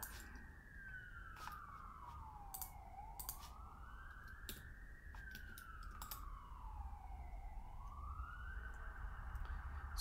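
Emergency vehicle siren wailing faintly from outside: a slow wail that climbs and falls about every four and a half seconds, two full cycles. A few sharp clicks sound over it.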